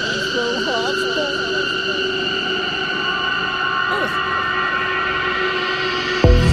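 Beatless breakdown of a live techno set: a steady, high electronic drone with warbling, gliding synth tones over it in the first two seconds.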